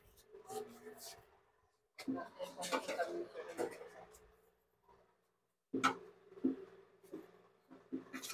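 Quiet, scattered clicks and knocks of hands and tools working on a motorcycle's plastic parts, fuel injector and wiring, with low voices in the background.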